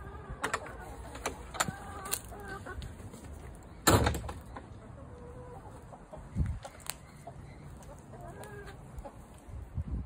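Chickens clucking in short calls, mostly in the first few seconds and again near the end. A single loud clunk comes about four seconds in, and a duller thump follows a couple of seconds later.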